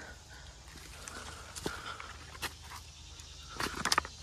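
Footsteps and rustling through brush in a creek bed, with a few sharp twig snaps and clicks, bunched together near the end.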